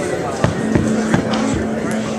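A live band making scattered sounds between songs: a few sharp hits about half a second apart and one held instrument note that begins about half a second in.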